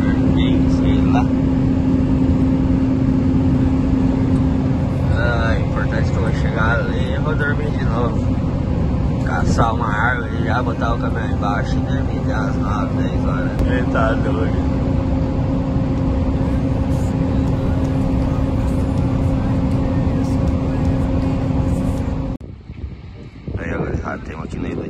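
Truck cab noise while driving: a steady engine drone with a humming tone over road rumble, and a voice heard over it through the middle. Near the end it cuts off abruptly to quieter open-air sound.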